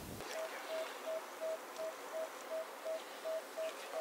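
Electronic beeping: one short mid-pitched beep repeated evenly, nearly three a second, over a faint steady hiss.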